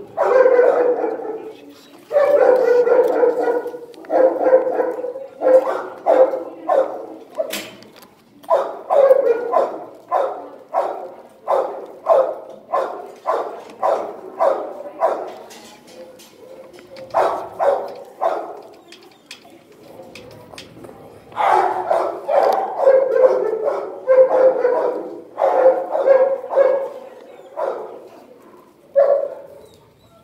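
A dog barking over and over in quick runs, with a lull about halfway through before the barking picks up again.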